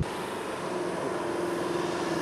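A car driving up a road: a steady engine hum over an even rush of road noise, the hum coming in about a second in.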